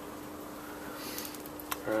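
Quiet room tone with a faint steady hum, and a single sharp click near the end.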